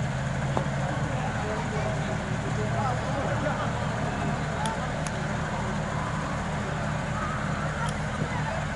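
Open-air cricket ground ambience: faint, distant voices of players calling across the field over a steady low hum, with a couple of faint ticks about halfway.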